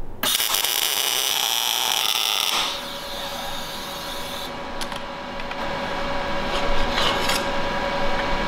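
MIG welder tack-welding a steel brake-caliper bracket: a loud arc crackle lasting about two and a half seconds, then a quieter hiss that stops about four and a half seconds in. After that come light handling noise and a faint steady hum.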